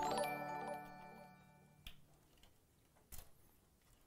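Electronic chime of a livestream on-screen alert: a bright chord of several ringing tones that starts suddenly, fades, and cuts off abruptly about two seconds in. A single sharp click follows about a second later.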